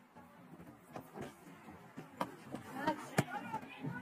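Quiet cricket-ground murmur, then one sharp crack a little after three seconds in: a cricket bat striking the ball.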